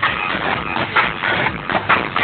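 Loud, distorted music with a dense wash of noise over it.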